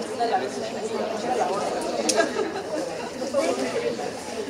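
Indistinct chatter of many students talking among themselves at once, with no single voice standing out.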